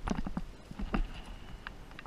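A climber's gear and hands knocking and clinking against rock while climbing: a few irregular short knocks and clicks, a cluster at the start and more about a second in, over a low rumble of wind on the microphone.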